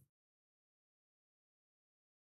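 Complete silence with no room tone: the audio track cuts out entirely, so not even the sewing machine is heard.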